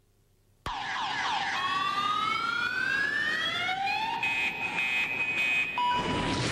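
Car alarm going off, starting suddenly under a second in and cycling through its tones: a long rising whoop, then a steady, high, pulsing tone.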